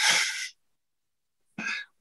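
A man's short, breathy burst of noise into the microphone, then the conference audio cuts to dead silence, broken near the end by a brief breath or syllable.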